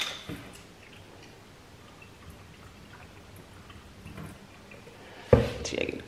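Spoiled oat milk being poured from a carton into a stainless-steel sink, a faint run of dripping and splashing. Near the end comes a single sharp thump as the carton is set down on the counter.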